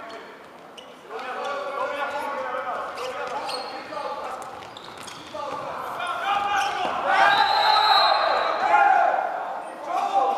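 Futsal ball being kicked and bouncing on a wooden sports-hall floor, with players' voices calling out and echoing in the large hall. The voices are loudest from about seven to nine seconds in.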